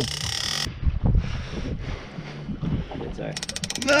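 Big-game fishing reel clicking rapidly and evenly near the end while a hooked bull shark is worked on the line. A short burst of rushing wind and water noise comes at the start, with rough boat and water noise under it.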